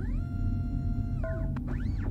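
Sci-fi sound effect of electronic whistling tones over a steady low hum of spaceship ambience. One tone rises, holds level for about a second, then falls away, and another sweeps up and back down near the end.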